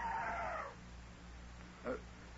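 Elephant trumpeting: one falling call that fades out within the first second.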